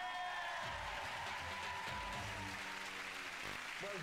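Studio audience cheering and applauding over a short burst of music with a few deep drum-like hits.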